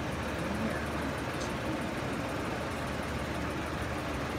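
Steady background noise of a large open hall, with faint distant voices.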